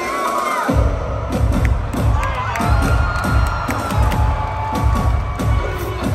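Live electronic music over a large concert sound system, its heavy bass and beat dropping in under a second in, with the crowd cheering and whooping over it.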